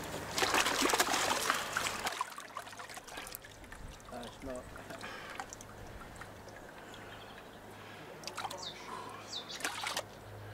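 Water splashing into a tub as a landing net holding fish is emptied into it, loud for about the first two seconds. Then quieter trickling water, with faint voices in the background.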